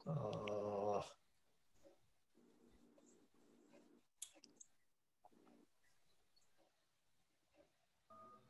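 A person's brief drawn-out vocal hum, about a second long, at the start, followed by near silence with a few faint clicks.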